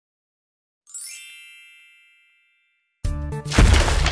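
A single bright, shimmering chime rings about a second in and fades away over a second or so. About three seconds in, background music starts abruptly and loudly.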